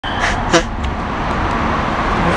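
Steady city road-traffic noise, with two short sharp sounds in the first second.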